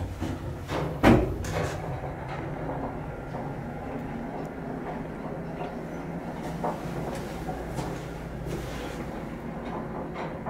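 Antique Otis traction elevator heard from inside the cab: a sharp thump about a second in, then the steady low rumble and hum of the car running.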